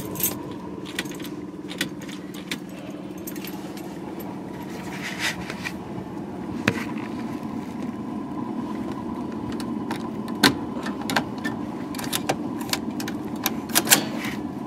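Car keys jangling on their ring with scattered sharp clicks as the ignition key is worked, over a steady low hum; there is no cranking, as the starter does not engage, which the owner puts down to an electrical problem.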